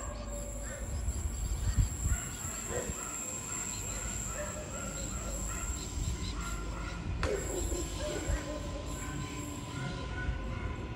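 A Queensland Rail NGR electric train approaching along the track, a low rumble with a steady whine coming in near the end, while birds chirp in short calls over a thin high steady tone.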